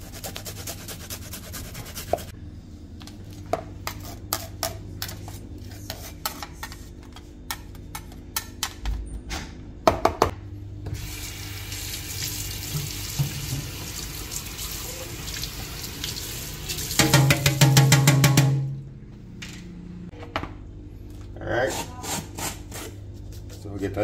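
Kitchen tap running water onto a metal box grater in a stainless steel sink as it is rinsed off. The water runs for several seconds midway, gets louder for a second or two, then stops; scattered light clicks and knocks come before it.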